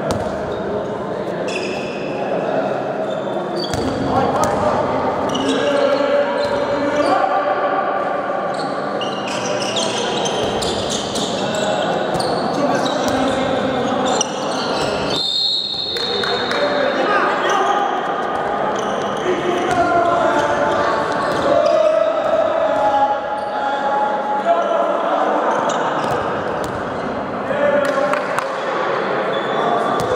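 Handball bouncing and slapping on a sports-hall floor amid players' shouts, echoing in the large hall, with a short high tone near the middle.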